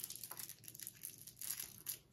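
Faint, irregular crinkling and crackling of a plastic candy wrapper being handled and pulled open by hand.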